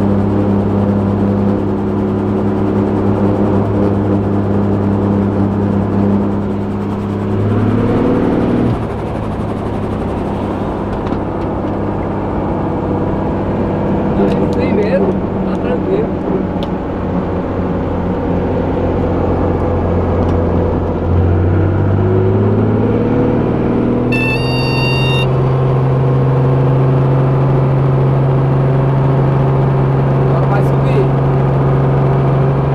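Helicopter engine and rotor running on the ground during the warm-up after start, heard inside the cabin as a steady pitched hum. Its speed rises briefly about eight seconds in and drops back, then climbs again a little after twenty seconds and holds at a higher pitch. A short electronic beep sounds just after that.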